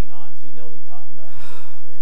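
A man speaking into a microphone, broken about a second and a half in by a loud, breathy gasp.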